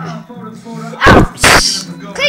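A loud sneeze close to the microphone about a second in: a breathy burst followed straight away by a sharper, hissing one.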